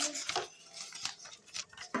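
Light clicks and clinks of small hard objects being handled, scattered through the two seconds.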